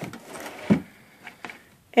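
A wooden drawer pushed shut: a brief sliding rustle, then a single knock as it closes a little under a second in, followed by a couple of faint taps.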